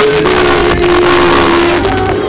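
Live gospel worship music: a single long note held for nearly two seconds and settling slightly lower, over a dense, loud wash from the band and voices.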